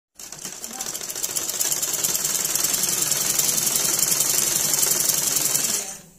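Black straight-stitch sewing machine stitching cotton fabric, a fast even run of needle strokes that gets louder over the first couple of seconds and stops just before the end.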